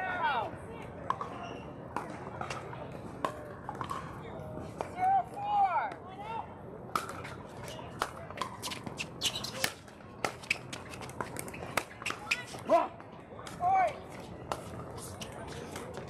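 Sharp, irregular pops of pickleball paddles hitting plastic balls during rallies on this and nearby outdoor courts, with players' voices in the background.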